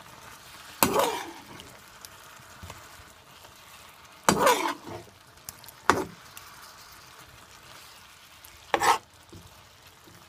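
Beef cubes frying in hot oil in a pot, a steady faint sizzle, while the meat browns. A metal spatula scrapes and clatters against the pot four times as the meat is stirred.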